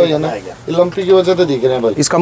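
A man's voice talking in short, continuous phrases.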